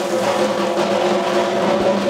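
Continuous drumming and percussion of a Hindu temple arati, a dense, steady clatter with a few held ringing tones over it.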